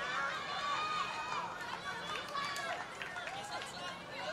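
Faint pitch-side sound of a youth football match: many high children's voices shouting and calling out at once across the field, over a low steady hum.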